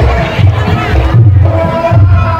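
Live Javanese jathilan accompaniment music with a steady heavy drum beat and held tones, mixed with shouting voices.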